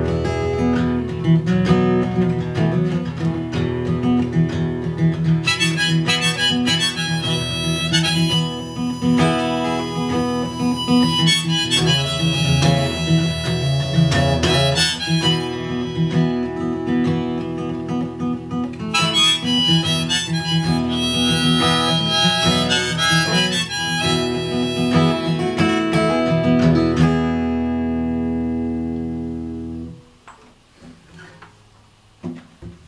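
Acoustic guitar strummed under a harmonica in a neck rack, the harmonica playing two long stretches of melody. This is the instrumental ending of the song: the last chord rings and fades away near the end.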